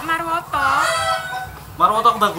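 A rooster crowing once, about half a second in, a single drawn-out call under a second long, between snatches of speech.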